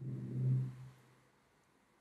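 A man's closed-mouth 'mmm' hum of hesitation, held for about a second at a steady low pitch, then near silence.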